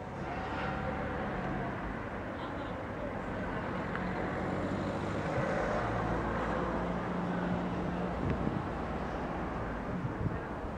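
Street ambience with a motor vehicle's engine running: a steady low hum under a noisy background.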